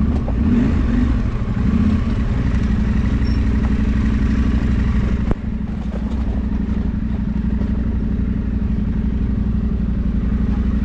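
Adventure motorcycle engine running at low, fairly steady revs, with a single knock about five seconds in.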